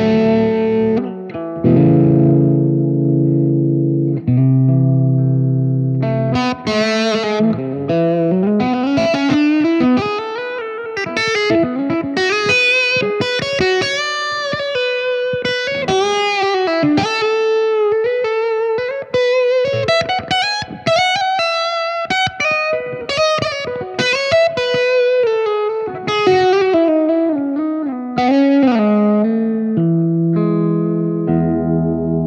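Overdriven electric guitar with P-90 pickups played through a Marshall Shredmaster reissue distortion pedal. A few sustained chords ring out, then from about six seconds in a single-note lead line with string bends and vibrato.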